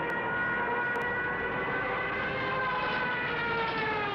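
A siren wailing on one sustained tone, its pitch rising slightly at first and then slowly falling.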